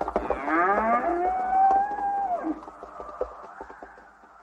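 A yoked ox lowing: one long call that rises, holds, then drops away about two and a half seconds in. It is a thirsty animal's call; the animals are said to want water.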